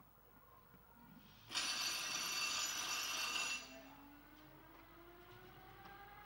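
A loud electric bell rings for about two seconds, then cuts off. A fainter motor whine follows, rising slowly in pitch as the mechanical hare gets under way before the traps open.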